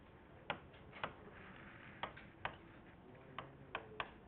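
A stylus pen tapping against the surface of a Promethean interactive whiteboard while writing, making about six faint, sharp clicks at uneven intervals.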